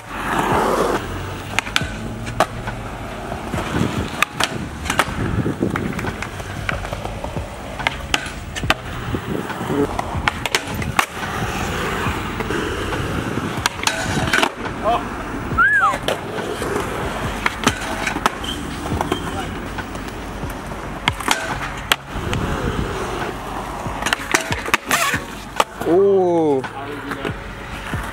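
Skateboards rolling on concrete, with repeated sharp tail pops, board-slaps on landing and boards scraping along a low portable metal rail.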